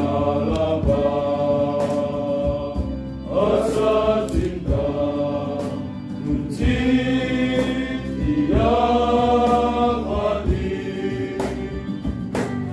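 Male choir singing a hymn in long held notes, phrase by phrase, accompanied by acoustic guitars and a violin.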